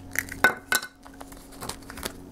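Hard plastic clicks and taps as an action figure and its black plastic display base are handled: three sharp clicks in the first second, then a few lighter ones near the end.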